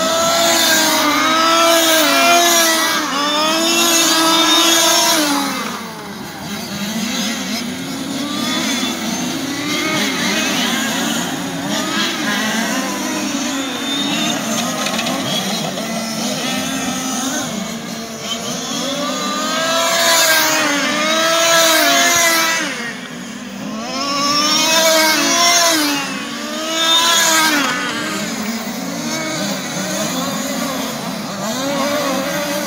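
Several large-scale RC touring cars' small two-stroke petrol engines racing, revving up and down through the corners so their pitch keeps rising and falling. The sound swells as the pack passes close, over the first few seconds and again about twenty seconds in.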